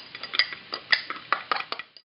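A small glass prep bowl clinking against a glass mixing bowl as chopped habanero is tipped out of it: a quick, irregular run of sharp clinks and taps.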